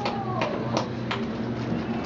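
Room noise: a steady low hum with faint, indistinct voices and a few short knocks about a third of a second apart.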